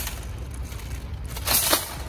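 Empty wire shopping cart rolling and rattling over a concrete sidewalk, with a louder clatter about one and a half seconds in.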